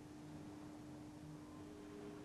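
Faint room tone: a steady low hum over an even hiss, with a second faint tone joining near the end.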